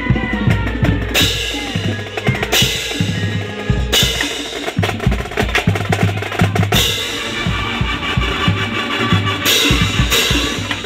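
High-school marching band playing, with the drum line to the fore: bass drums and snare drums beating steadily, and loud full-band accents about 1, 2.5, 4, 7 and 9.5 seconds in.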